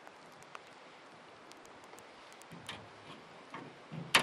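Faint scattered small ticks over a quiet outdoor background, with a few duller knocks in the second half.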